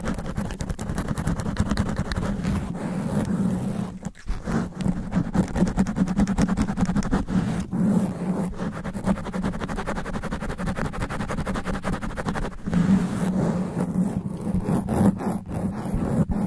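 Long fingernails scratching fast and hard on the foam cover of a Blue Yeti microphone, right on the capsule, in dense rapid strokes with a short break about four seconds in.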